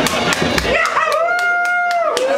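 Live rock band playing a slow ballad: a melodic line glides up about a second in and holds one sustained note, over a steady run of drum and cymbal hits.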